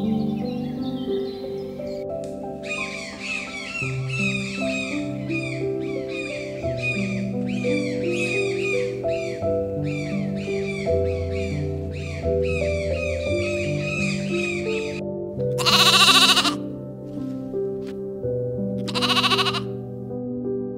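Goat bleating twice over soft background music, two loud calls about a second long, near the end, three seconds apart. Earlier, quick repeated high bird chirps run over the music for many seconds.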